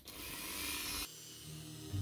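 A Dremel rotary tool spinning a small polishing bit to polish a cast brass pendant, a steady high hiss that cuts off suddenly about a second in. Soft music begins near the end.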